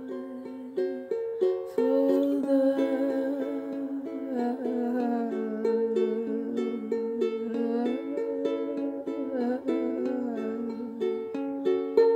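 Plucked string instrument picking a repeating pattern of notes, with a voice humming a wordless melody over it from about two seconds in.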